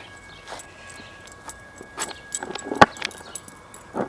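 Keys on a keychain jangling in a scatter of light clicks and jingles as the rider shifts on a skateboard, with one sharper click about three seconds in.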